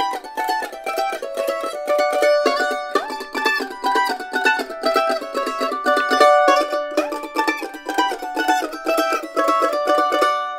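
Acoustic A-style mandolins, fast-picked, playing a double-stop phrase with two strings sounding together: The Loar LM-110 Honey Creek first, then, about six and a half seconds in, the same phrase on a Kentucky KM 150.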